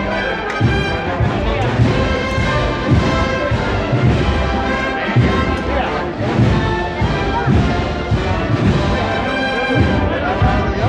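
Processional wind band, a Spanish banda de música, playing a Holy Week march: brass carrying the melody over regular bass drum beats.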